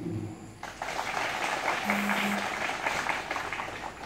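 Crowd applauding: a burst of clapping that starts abruptly under a second in, holds steady, and dies away near the end.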